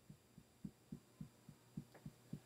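Faint, soft thuds of fingertips tapping the collarbone through a shirt in EFT tapping, an even rhythm of about three and a half taps a second.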